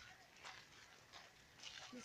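Near silence: faint outdoor background with a few soft scuffs, about half a second in and again near the end.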